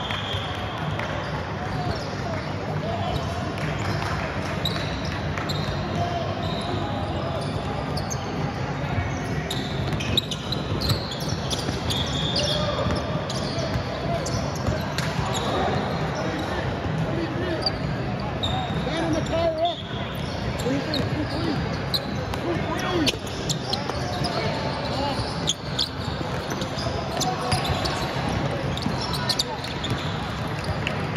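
A basketball bouncing on a hardwood gym floor as it is dribbled up the court, with repeated short knocks, under indistinct voices of players and onlookers echoing in a large hall.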